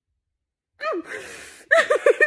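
A woman crying after nearly a second of dead silence: a short wail falling in pitch, a long ragged gasping breath, then quick rhythmic sobs near the end.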